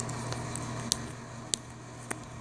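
A steady low hum with two short, sharp clicks, one a little under a second in and one about a second and a half in.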